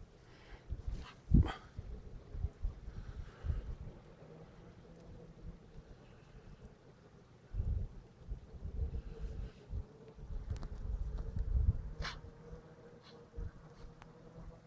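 Wind rumbling on the microphone in gusts, with a faint steady hum through the second half and a couple of sharp clicks, about a second in and near the end.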